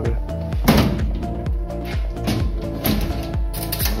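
Background electronic music with a steady beat and held tones, with one brief louder sound just under a second in.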